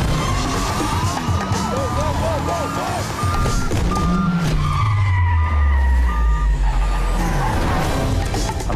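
Car being driven hard: engine revving with tyre squeals, mixed with music in a film trailer. A deep engine note slides down in pitch about halfway through.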